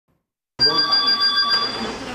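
Office landline telephone ringing, starting about half a second in and stopping shortly before the end.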